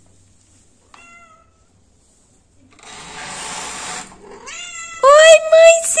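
Domestic cat meowing at its owner's return home: a faint short meow about a second in, then loud, long, drawn-out meows from about five seconds in. A brief rustling scrape comes in between.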